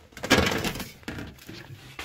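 Sheet-metal wall-mounting bracket of a mini-split indoor unit being handled and set against a wall: a short burst of metal clatter and scraping in the first second, then quieter handling.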